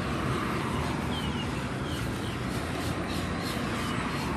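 Steady outdoor background noise with a few faint, short chirps, likely distant birds.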